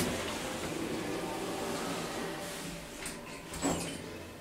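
Passenger lift car travelling down one floor with a steady running noise. Near the end the sliding doors open.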